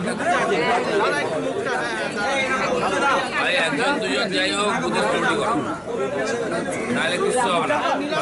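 Several people talking at once in overlapping, unintelligible conversation.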